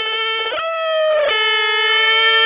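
A wind instrument plays long held notes, stepping up to a higher note about half a second in and back down just over a second in, as a music track begins.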